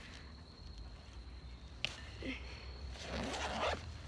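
Zipper on the big pocket of a Franklin softball bag being pulled open: a low scratchy rasp, a sharp click about halfway, and a longer rasp near the end.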